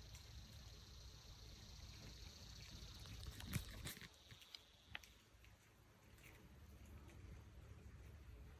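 Near silence in the woods: a faint steady high hum that fades out about halfway through, and a few soft clicks around the middle.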